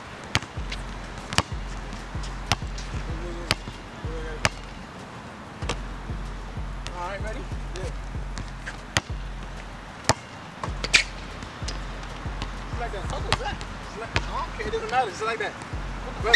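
A basketball being dribbled on an outdoor asphalt court: sharp, irregular bounces roughly once a second.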